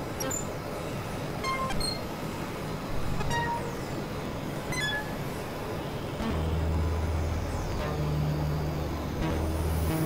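Dense experimental electronic noise collage from several tracks playing at once: a steady hiss-like wash dotted with short blips at changing pitches and a few falling whistle-like glides, with a deep low drone coming in about six seconds in.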